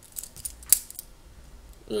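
A pen writing on notebook paper: soft scratching strokes with a few short clicks and taps, the sharpest about three quarters of a second in.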